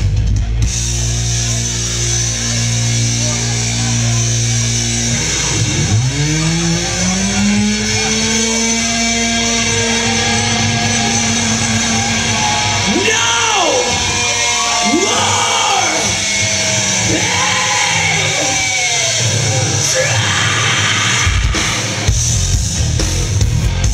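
A live heavy rock band playing. A held guitar chord rings for about five seconds, then long notes slide up and are held, and the second half is full of swooping pitch bends, with a singer's voice over the band.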